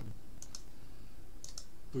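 Light clicks on a computer: one at the start, then two quick double clicks about a second apart.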